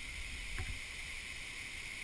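Steady high hiss of rainforest ambience under the low rumble of a hand-held camera on the move, with one short tap a little over half a second in.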